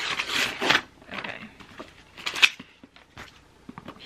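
Paper gift wrapping being torn and crinkled by hand in irregular rustling bursts, loudest in the first second, with one sharp snap about two and a half seconds in.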